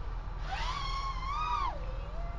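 FPV quadcopter motors whining. The pitch climbs about half a second in, holds with a slight waver, then drops away near the end as the throttle comes up and backs off.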